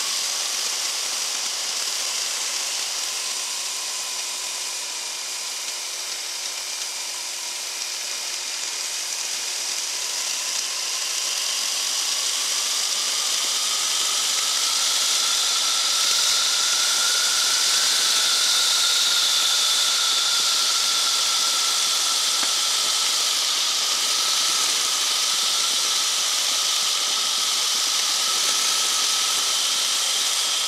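Flexwing microlight trike in flight, heard from on board: the engine and propeller whine under a steady rush of wind. The whine sags a little at first, then rises in pitch and grows louder about halfway through and holds there as the trike comes in on its landing approach.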